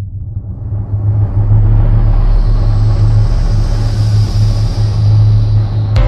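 Deep, steady rumbling drone with a hissing wash swelling in above it, growing louder over the first two seconds: the ambient opening of an atmospheric black metal track.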